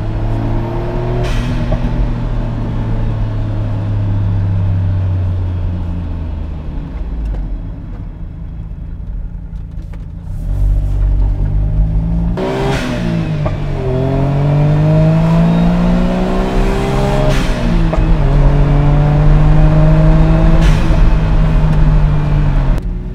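Autozam AZ-1's turbocharged 660cc three-cylinder engine under way, steady and slowly dropping in pitch, then easing off about seven seconds in. From about ten seconds it pulls hard, with two upshifts a few seconds apart and the revs climbing after each one.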